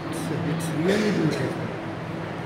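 A steady low hum that fades out about a second in, with a person's voice briefly rising and falling around the same point.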